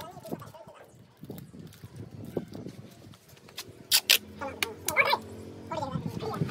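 People talking in the background, with two sharp clicks close together about four seconds in.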